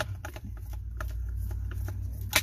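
Irregular light metal clicks as a small hand tool turns a screw in the end cap of a Nissan pickup starter motor during reassembly, over a steady low hum.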